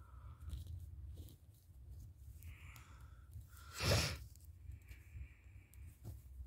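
Quiet handling noise as fingers move a small plastic dinosaur figure's legs, over a low hum, with one brief louder rustle about four seconds in.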